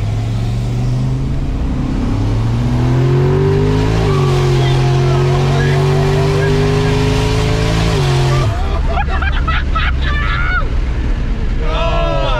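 Mercury Marauder's turbocharged 4.6-litre V8 at full throttle, heard from inside the cabin. The engine pitch climbs for about four seconds, dips at a gearshift, climbs slowly again, then falls as the throttle closes about eight seconds in.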